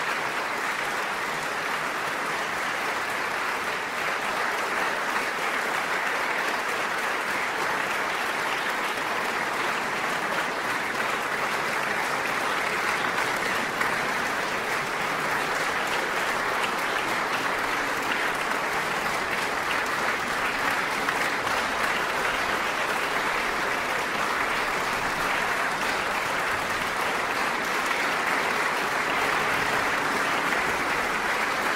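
Concert audience applauding in a large hall, steady, dense clapping after the performance.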